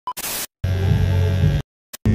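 Edited intro sound effects: a brief beep, then a short burst of static hiss, then about a second of low hum, each cut off abruptly with silent gaps between.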